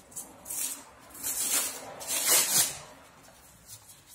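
Hook-and-loop rasping as a sanding disc is pulled off and handled at the backing pad of a Yokiji KS-01-150-50 random-orbital sander to fit a soft interface pad, with the sander switched off. There are three short, rough rips, each about half a second long.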